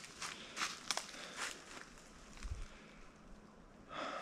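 Footsteps on dry leaf litter and pine straw: about four steps in the first second and a half, then fainter, with a low thump about two and a half seconds in.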